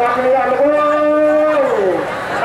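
A single voice chanting in a melodic intoned style, holding one long note and then sliding down in pitch near the end.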